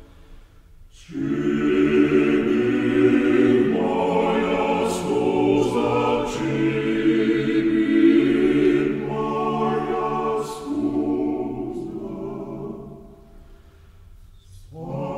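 A cappella male vocal octet singing one slow phrase in sustained chords, entering about a second in and fading away near the end.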